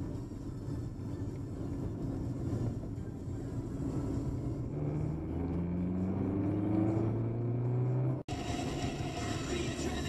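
Car engine and road noise heard inside the cabin. From about five seconds in, the engine note rises steadily as the car accelerates. Just after eight seconds the sound cuts off abruptly and a different, brighter run of road and wind noise follows.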